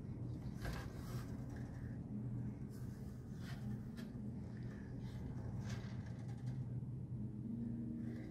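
Faint handling sounds of a wooden autoharp being picked up and tilted by hand: a few soft knocks and scrapes, over a steady low hum.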